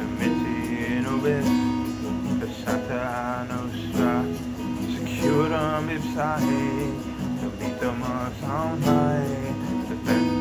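A man singing a slow, wavering melody over steady sustained accompaniment chords.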